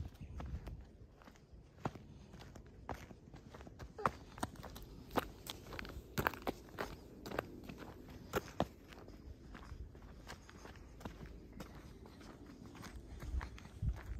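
Footsteps of a hiker walking on a paved path: irregular sharp ticks and scuffs about once a second over a low rumble.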